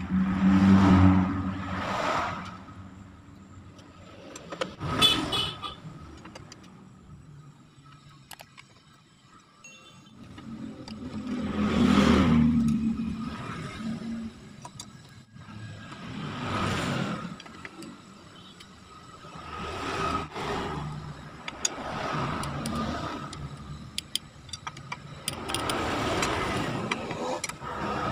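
Road vehicles passing again and again, each one swelling and fading over a couple of seconds. Between them come light metal clicks of a socket wrench tightening the crankcase bolts of a motorcycle engine.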